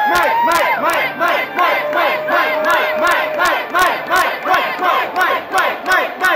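Concert audience shouting and cheering in a quick, regular rhythm, with sharp claps on the beat.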